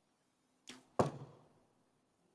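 A compound bow shot: the snap of the release, then about a third of a second later a sharper, louder smack of the arrow striking the target that rings on briefly. The arrow scores a 10.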